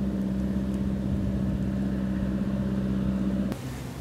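A steady mechanical hum of an engine running at constant speed, with one strong low tone over a rumble; it cuts off suddenly about three and a half seconds in.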